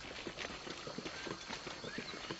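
Faint, irregular scuffling and footfalls on leaf litter, a patter of small knocks and crackles over a low background hiss.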